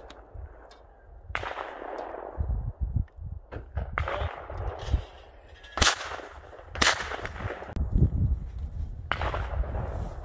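Blaser F3 Vantage over-and-under shotgun firing twice, two sharp reports about a second apart.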